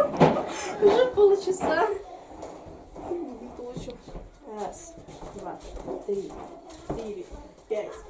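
Girls' voices in a small room, loud for the first two seconds and then much quieter and broken up.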